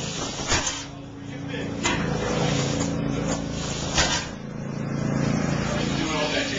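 A barbell loaded with plates and hanging chains is lowered from a deadlift lockout and set down on a rubber gym floor. Sharp knocks and clanks of chain links and plates come about half a second and two seconds in, and the loudest thud about four seconds in.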